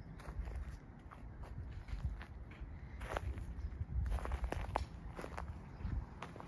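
Footsteps on dry fallen leaves and wood-chip mulch, each step giving a few crackling crunches, more of them and louder in the second half.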